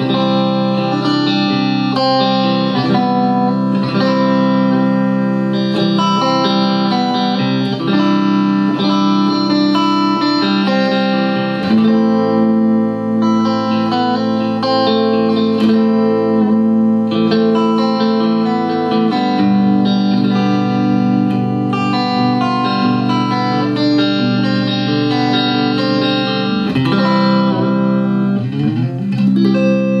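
1999 Parker Nitefly electric guitar played clean through an electric guitar amp on its neck and middle pickups together: sustained ringing chords that change about twelve seconds in and again near twenty seconds, with a bend in pitch near the end.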